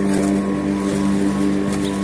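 Small electric rotary lawn mower running at a steady pitch while cutting grass, its motor and blade giving an even hum that does not change.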